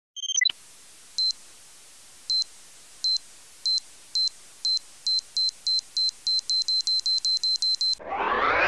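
Electronic beeps of an intro sound effect: a short falling blip at the start, then short high beeps over a faint hiss. The beeps come faster and faster, from about one a second to about five a second by the end, like a countdown speeding up.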